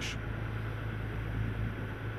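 Steady wind and water noise from a choppy sea, over a constant low hum.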